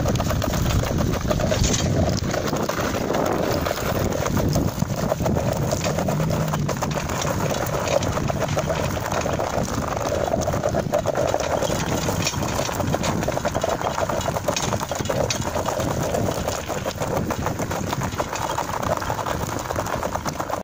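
Wheels of a dog-drawn rig rolling over a gravel road: a continuous, steady crunching rattle.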